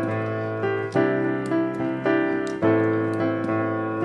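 Piano playing block chords that are struck and held, a new chord coming in about every second, some of them coloured with an added second (add2/ninth).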